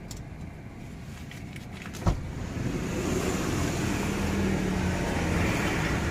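A motor vehicle passing close by, heard from inside a stationary car: its engine hum and road noise build up over the last few seconds. There is a short knock about two seconds in.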